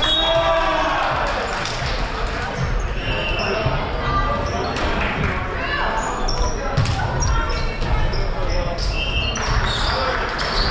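Voices and shouts of players and spectators echoing in a school gymnasium. Scattered sharp knocks of a volleyball being hit and bouncing on the hardwood court are mixed in.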